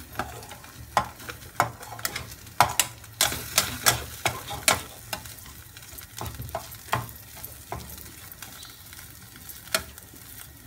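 Metal spatula scraping and knocking against a stainless steel kadai as thick rice-flour dough is stirred and cooked on the stove, in irregular clicks and scrapes that come thickest in the first half.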